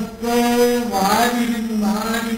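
A man chanting into a microphone in long held notes: one steady note, a short dip and glide in pitch about halfway, then another held note.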